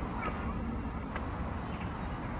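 Class 170 Turbostar diesel multiple unit approaching at a distance, a steady low rumble, with a few short, meow-like chirping bird calls over it.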